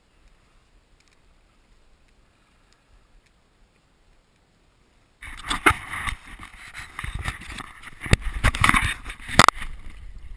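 Quiet for about five seconds, then a sudden loud run of rubbing, scraping and sharp knocks from an action camera's housing being handled as it is taken off and turned.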